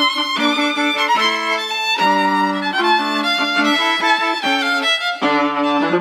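Violin playing a quick melody, the notes changing about two or three times a second, with no bass underneath.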